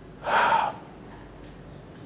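A man's quick, audible intake of breath through the mouth, lasting about half a second shortly after the start, picked up close on a lapel microphone. Low room tone follows.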